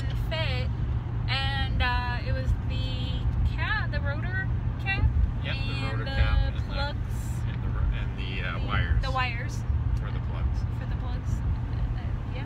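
Steady low rumble of a Ford F-350 pickup's engine and tyres heard from inside the cab while driving, with talking over it.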